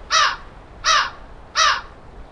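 A bird calling: three loud calls evenly spaced about 0.7 s apart, each falling slightly in pitch.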